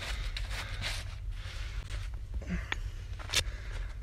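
Close-up rustling and scraping of a gloved hand and loose dirt against the phone, over a steady low rumble of handling or wind on the microphone, with one sharp click about three and a half seconds in.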